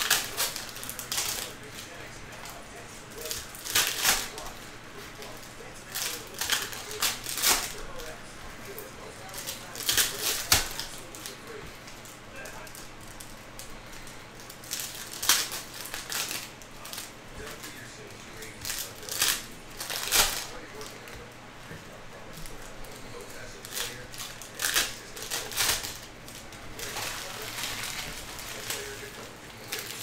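Stiff chrome-finish trading cards being flipped off a stack one by one: short crisp swishes and clicks as card edges slide and snap against each other, coming at irregular intervals.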